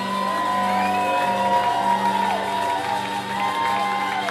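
Live rock band holding a sustained closing chord while audience members whoop and cheer over it.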